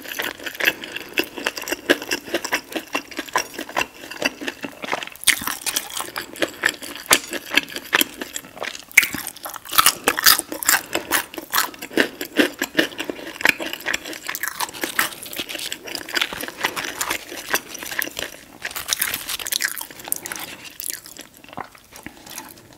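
Close-miked chewing and crunching of breaded fried chicken tenders, a dense run of rapid crisp crackles that thins out near the end.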